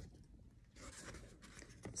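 Faint rustling of paper as the pages of a picture book are handled and turned.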